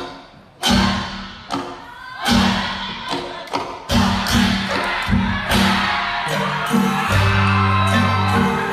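Isan pong lang folk ensemble playing live: heavy accented beats about every second and a half open the passage, then the full ensemble fills in, with a steady low drone entering about seven seconds in.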